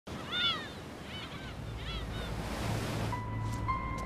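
Gulls calling in three short bursts of arching cries over a steady wash of sea waves. Sustained music notes come in about three seconds in.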